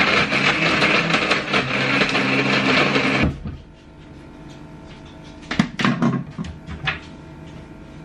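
Countertop blender running at full speed, blending ice cubes and frozen fruit with soya milk into a smoothie, then cutting off suddenly about three seconds in. A few light knocks follow.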